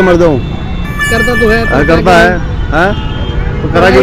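Road traffic rumbling steadily under men's voices in short bursts, with a short high steady note about a second in.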